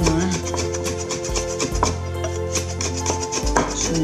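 Rapid, evenly spaced chops of a chef's knife through green onion onto a wooden cutting board, heard over background music.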